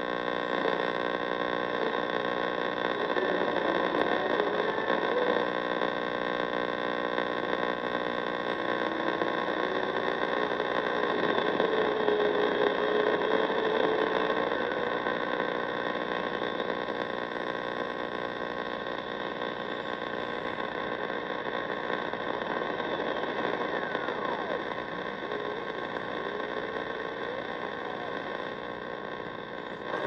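Marc Pathfinder NR-52F1 multiband receiver tuned to long wave, its speaker giving steady static and buzzing interference, with faint whistles sliding up and down as the tuning knob is turned. The weak 257 kHz beacon being searched for does not come through.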